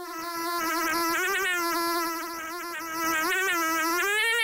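Cartoon housefly buzzing: one steady, pitched buzz that wavers slightly and goes softer for a moment in the middle.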